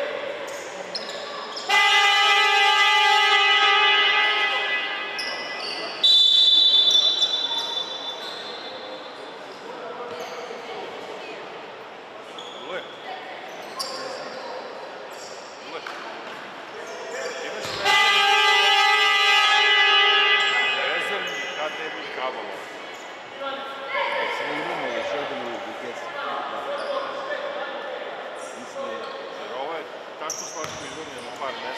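Basketball game in a sports hall: a loud buzzing horn sounds about two seconds in and again near eighteen seconds, each time for two to three seconds, and a high whistle blows for about two seconds around six seconds in. Between them a basketball bounces on the hardwood floor amid voices in the echoing hall.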